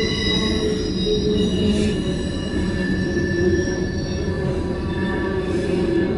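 Freight train cars rolling past a crossing: a steady low rumble of steel wheels on rail with a high-pitched wheel squeal held throughout, typical of wheel flanges grinding on the curve of a wye.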